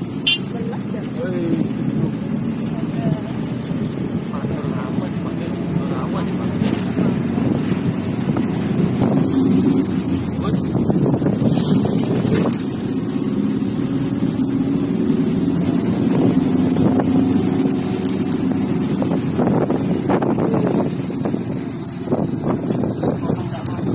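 Motorcycle engine running steadily while the bike rides along, its pitch shifting slightly with speed.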